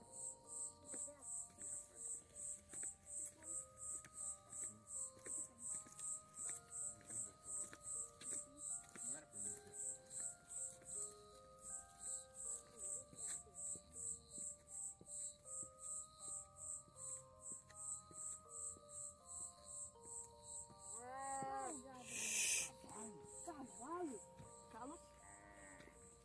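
Night insect, cricket-like, chirping in an even high-pitched rhythm of about two to three pulses a second. Faint music of slow held notes plays beneath it. Near the end a voice sounds briefly, followed by a short hiss.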